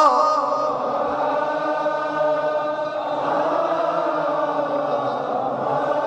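Many men's voices chanting together in one long, sustained lament without clear words, a congregation's mourning response to the sung eulogy.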